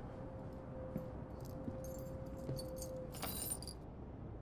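Light metallic jingling in several short bursts, the loudest a little after three seconds in, over a steady held tone that stops shortly before it.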